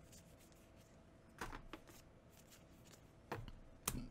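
Faint rustle of Magic: The Gathering trading cards being slid and flipped through by hand, with a few soft card clicks about one and a half seconds in and again near the end.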